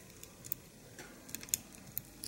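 A few faint, light clicks, roughly one every half second, over quiet room tone: small handling sounds from gluing a fly-tying tail with a head-cement applicator.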